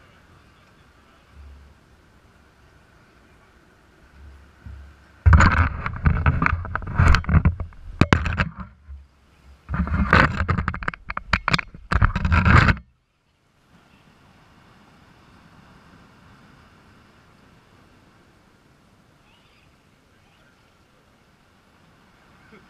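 Camera handling noise: a loud run of knocks, bumps and scraping against rock for about eight seconds, starting about five seconds in and cutting off suddenly, then a faint steady background.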